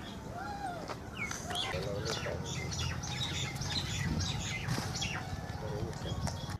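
Small birds chirping in rapid, repeated short calls over a steady low rumble.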